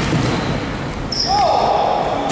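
A basketball being dribbled on a sports-hall court, with a long sneaker squeak that starts a little past halfway with a quick bend in pitch, over players' voices.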